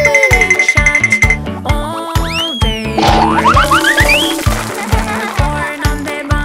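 Upbeat children's background music with a steady drum beat, overlaid with cartoon sound effects: a falling slide whistle near the start, then an arching glide and a quick run of rising springy boings about three seconds in.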